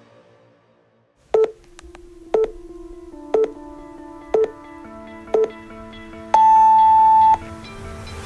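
Workout interval timer counting down: five short, lower beeps a second apart, starting about a second in, then one longer, higher beep of about a second that marks the end of the exercise interval. Soft, sustained music chords play underneath.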